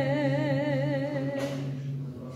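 A woman's unaccompanied voice holding a long final sung note with vibrato over a low steady hummed drone. Her note breaks off with a short breath about one and a half seconds in, and the drone stops right at the end.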